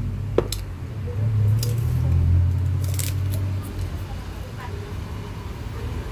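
Mouth sounds of someone eating an ice cream cone: a few short wet clicks and smacks over a low rumble that fades after about four seconds.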